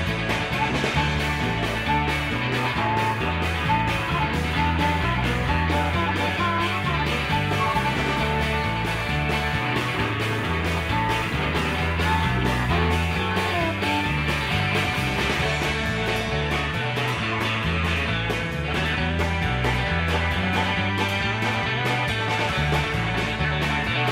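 Southern rock band playing live through an instrumental break: a harmonica solo over electric guitar, bass and a steady drum beat.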